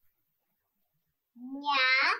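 Near silence, then a voice saying the Spanish syllable "ña" about a second and a half in, drawn out.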